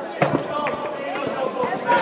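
A single sharp bang about a quarter of a second in, ringing briefly in a large hall.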